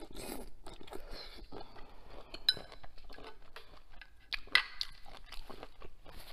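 Close-miked chewing of a mouthful of shell-on shrimp: a steady run of wet crunches as the shell is bitten through. Two sharper clicks stand out, halfway through and a louder one near the end.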